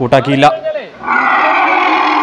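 An elephant calf gives one long, harsh trumpeting call, starting about a second in, just after a word of narration.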